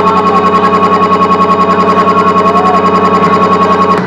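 An amplified sustained chord from the band, held at one pitch and pulsing evenly about eight times a second like a tremolo, then cut off abruptly.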